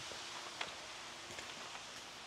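Quiet outdoor ambience with a few faint footsteps.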